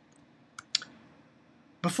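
Quiet room with a few short, faint clicks about half a second in, then a man starts speaking near the end.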